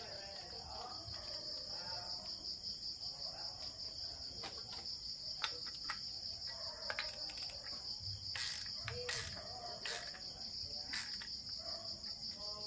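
Crickets chirring steadily in the background, with scattered sharp clicks and knocks as the metal airgun receiver and its fittings are handled and worked with a hand tool.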